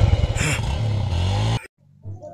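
Motorcycle engine running with a fast low pulsing and some rising and falling pitch, cutting off abruptly about one and a half seconds in.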